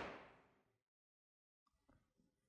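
The fading ring of a Lada Vesta's hood slamming shut onto its latch, dying away within about half a second. The hood is being closed to check that it still shuts properly with newly fitted gas struts. Near silence follows.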